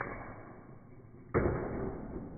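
Slowed-down sound of a Hot Wheels toy car on its plastic track: a light click, then a sudden knock about one and a half seconds in that trails off over about half a second.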